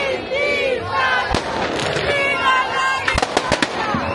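Fireworks going off: one sharp bang a little over a second in, then a quick run of five or six cracks near the end, over a crowd of people shouting.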